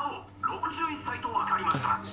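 A voice speaking quietly, from the subtitled anime's dialogue playing in the room.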